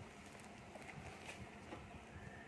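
Faint rustling of bubble wrap, with a few light ticks, as hands handle a bubble-wrapped box and cut at the wrap with a blade.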